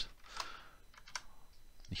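Computer keyboard keys pressed a few times, each a separate click, as two single quote marks are typed into the code.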